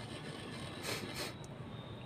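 Faint steady background hiss, with two brief soft rustles about a second in from a finger pressing and shaping a well in a mound of powdered artificial snow.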